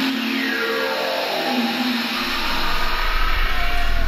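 Techno DJ set in a breakdown with no kick drum: a synth line slides downward in pitch, then a deep bass swells back in a little over two seconds in.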